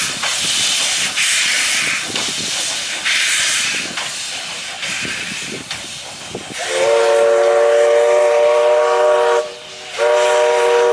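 Steam locomotive pulling away, its exhaust chuffing and hissing about once a second. About two-thirds of the way through, its steam whistle sounds a long, loud chord of several notes, breaks off briefly near the end and starts again.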